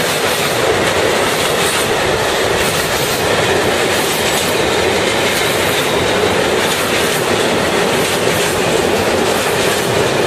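Freight train's loaded wagons rolling past close by, a steady loud rumble of wheels on rails with repeated wheel clicks over the rail joints.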